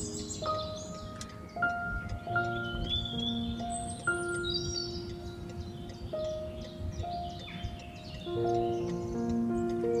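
Calm background music of slow, held chime-like notes that change about once a second, with bird chirps mixed in high above.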